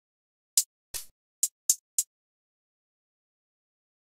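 Five short, crisp hi-hat hits, one at a time in the first two seconds, as replacement hi-hat samples are auditioned on their own, followed by silence.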